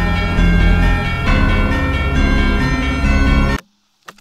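Loud horror film score: many sustained, bell-like tones layered over a heavy bass drone. It cuts off suddenly about three and a half seconds in, leaving only a faint low hum.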